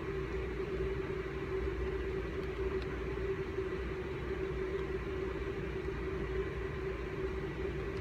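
A steady mechanical hum with one constant mid-pitched tone and a low rumble under it, unchanging throughout. A couple of faint ticks sound about two and a half to three seconds in.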